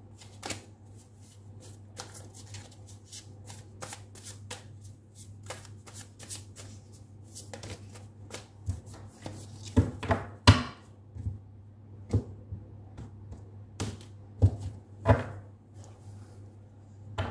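Hand-shuffling a deck of Light Seers Tarot cards: a continuous run of soft card clicks and riffles, with a few louder clacks in the second half. A steady low hum runs underneath.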